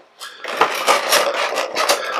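Clear plastic bag crinkling as a vinyl Funko Pop figure is handled in it, an irregular crackle starting about a third of a second in.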